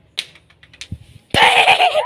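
A few light clicks and taps, then, about a second and a half in, a sudden loud rustling scrape as a hand covers and rubs against the phone's microphone.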